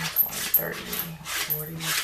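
A woman's voice softly counting coin totals under her breath, with a few sharp clicks of dimes being slid and tapped on the tabletop.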